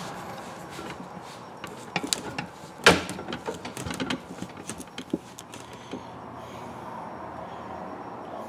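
A rod grip being forced by hand along a catfish rod blank: scattered creaks, clicks and knocks as it is pushed and twisted, with the sharpest knock about three seconds in, over a steady low hum.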